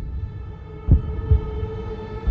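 Heartbeat-style trailer sound design: a low double thump, about every second and a half, over a steady humming drone.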